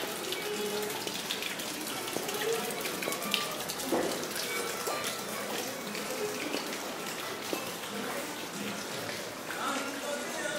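Thin fountain jet of water falling into a shallow stone basin, a steady splashing hiss, with visitors' voices murmuring in the background.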